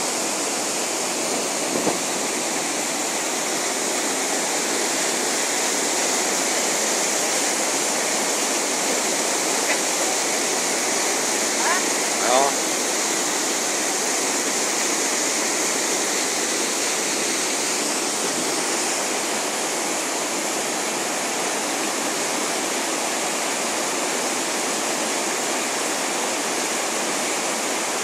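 River rapids rushing: a steady, unbroken noise of churning white water pouring over a drop.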